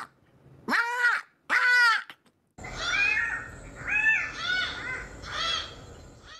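Cock-of-the-rock calling: two arching squawks in the first two seconds, then after a short break several more squawks over a background hiss.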